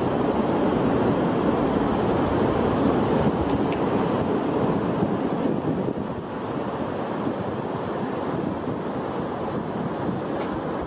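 Steady rushing noise with no clear tones or beat, dipping slightly in level about six seconds in.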